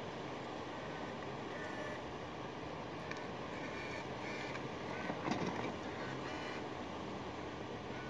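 Small four-wheeled ride-on vehicle driving past, a faint motor hum over a steady hiss of tyre and street noise, with a brief louder sound a little past halfway.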